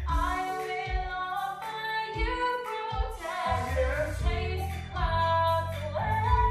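A woman singing a slow, sustained melody over instrumental accompaniment, with a low bass part filling in from about halfway. The music is heard as played through a television and recorded on a phone.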